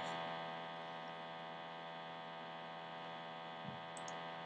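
Steady electrical mains hum, a low buzz made of many evenly spaced tones, with a faint click near the end.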